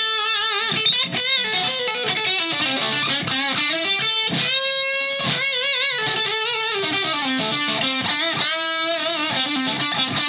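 Electric guitar played through an Orange Thunderverb 50 valve head's channel B, with the guitar's pickups switched to single-coil mode: a run of single-note lead lines with wide vibrato and string bends.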